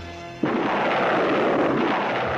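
Cartoon sound effect: a loud, steady rushing roar that starts abruptly about half a second in, over background music.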